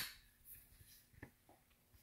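Near silence with a few faint, short plastic clicks and scrapes as a Ryobi 18V ONE+ battery pack is handled and lined up on the string trimmer's housing, before it snaps in.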